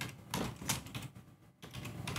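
Typing on a computer keyboard: a run of separate key clicks at an uneven pace as a command is entered.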